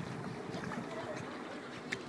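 Steady sloshing of shallow lake water around the legs of people wading through it, with a brief knock near the end.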